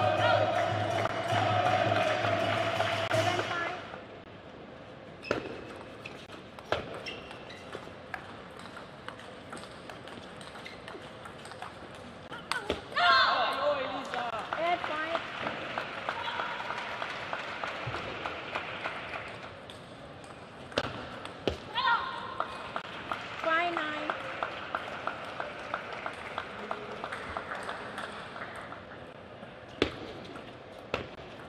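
Table tennis rallies: the celluloid-type plastic ball clicks sharply off the bats and the table, with shouts from the players and applause as points are won. Loud arena music plays for the first few seconds, then stops suddenly. Near the end come quick, evenly spaced ball ticks.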